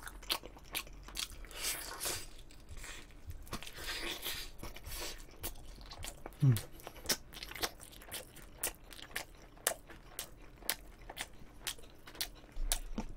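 Close-miked biting, crunching and chewing of sauce-coated Korean seasoned fried chicken (yangnyeom chicken), with many sharp crunchy clicks throughout. A short low hum from the eater falls in pitch about six and a half seconds in.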